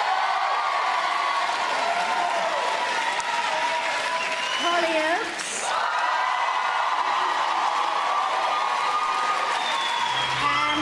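Large audience applauding, with voices cheering and whooping over the clapping.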